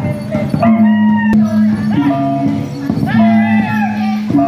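Traditional Alor dance music: several voices chanting long, sliding notes over a steady low held tone that steps between two pitches. A single sharp click sounds just after a second in.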